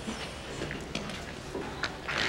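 Low background murmur of a gathered crowd, with a few faint clicks.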